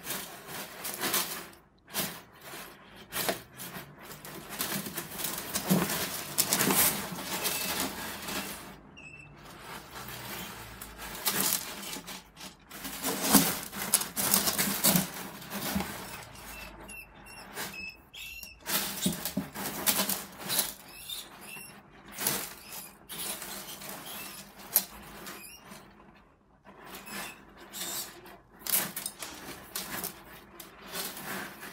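A savannah monitor shaking and thrashing a rat about on gravel substrate in a glass tank. The result is irregular rattling, scraping and knocking of gravel in flurries, with brief lulls.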